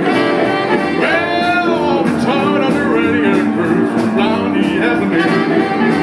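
Live rhythm and blues band playing a rock and roll number, a saxophone leading over upright bass, drums and guitar.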